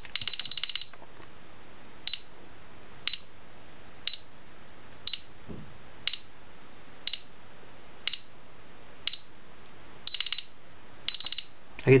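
DSC RFK5500 LCD alarm keypad's buzzer sounding the exit delay countdown. A quick run of about six beeps comes as the system arms. Then there is one high-pitched beep each second, quickening to clusters of three beeps in the last couple of seconds as the delay runs out.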